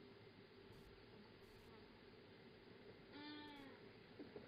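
Faint outdoor quiet with a steady low hum, and about three seconds in one short animal call with a clear pitch that falls slightly.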